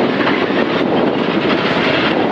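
Skoda rally car running at speed down a gravel straight, heard inside the cabin: a steady, loud blend of engine and road noise with loose stones ticking against the body.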